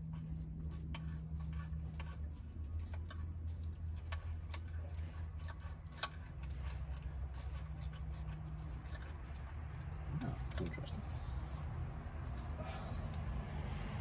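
Irregular light metallic clicks and taps of hand tools on fasteners as screws are snugged down on the engine, over a steady low hum.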